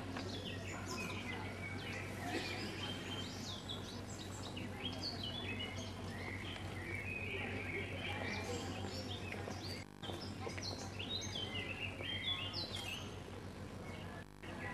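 Small birds chirping and singing, many quick high notes coming on and off, over a steady low hum.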